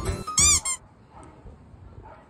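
A single short high-pitched squeak, rising then falling in pitch, about half a second in.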